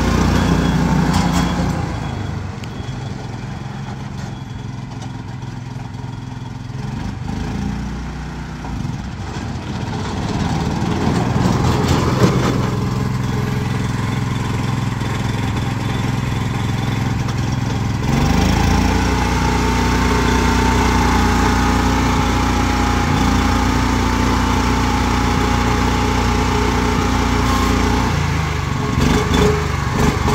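Small petrol engine of a four-wheel-drive motorized dump carrier running as the vehicle is driven, its speed shifting. About two-thirds in, the engine speeds up and holds a higher steady note for about ten seconds, then drops back near the end, while the hydraulic dump bed is raised.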